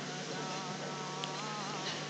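Quiet room tone in a lecture hall: a steady low hum and hiss. From about half a second in until near the end, a faint, distant, drawn-out voice wavers in pitch.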